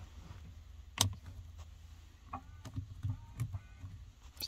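A plastic switch click about a second in, then faint short whirs of a Hummer H3 power side-mirror motor moving the mirror glass in brief bursts, the mirror working again after a wiring repair.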